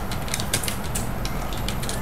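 Crayon rubbing and tapping on paper in short, irregular strokes, over a steady low hum.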